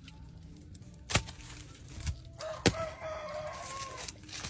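A rooster crowing once: one long call through the last second and a half. Two sharp clicks come before it.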